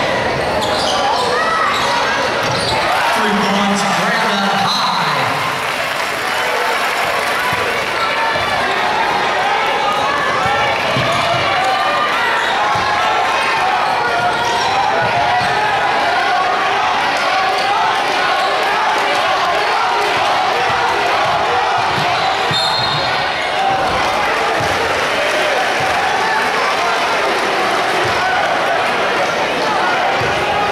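Live basketball game in an arena: steady crowd chatter and shouts in the hall, with the ball bouncing on the hardwood floor as players dribble up the court.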